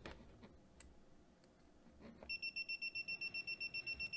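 Mustool MT11 multimeter's beeper sounding a rapid, high-pitched beeping, about seven beeps a second, starting about two seconds in: the meter's live-wire function signalling that the red probe has found live voltage. Before it, a few faint clicks from handling the probe.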